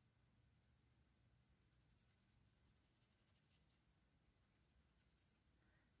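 Near silence, with very faint scratching of a black felt-tip marker colouring in on paper.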